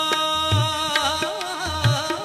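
Shabad kirtan: harmonium held on steady notes, a voice singing a wavering ornamented line from about half a second in, and two deep tabla strokes.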